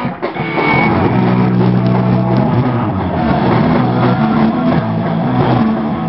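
Live punk rock band playing loud through amplifiers, distorted electric guitars leading. After a brief drop just after the start, the full band comes in about a second in with held chords that change every second or so.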